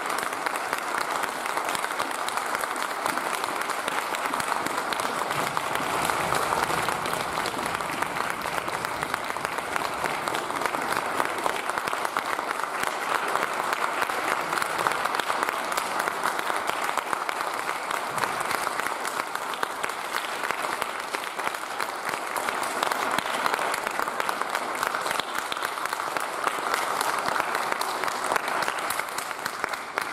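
Sustained audience applause, many hands clapping at a steady level.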